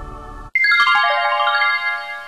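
Transition jingle: the sustained chord of the preceding music cuts off about half a second in, and a quick run of bell-like electronic notes steps downward, each note ringing on and fading together.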